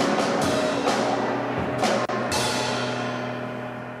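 A live band's drums and bass closing out a song: several drum hits and cymbal crashes over a held low note, the last crash a little over two seconds in. After it everything rings out and fades away.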